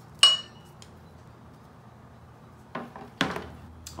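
A sharp metallic clink with a brief ringing note, then two duller knocks near the end: the removed front brake hose assembly with its metal fittings being handled and set down.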